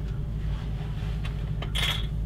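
Fold-up piano Murphy bed being pushed closed, with a short scrape near the end, over a steady low background hum.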